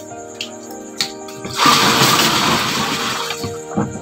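About a second and a half in, a rush of water is poured or dumped out of a plastic basin and splashes for about two seconds, louder than the background music under it.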